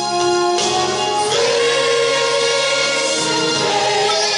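A gospel hymn sung by a group of voices, with long held notes that shift to new pitches a couple of times.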